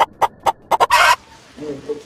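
Chicken clucking: a quick run of short clucks, about four or five a second, ending in a longer squawk about a second in, then softer low clucks near the end.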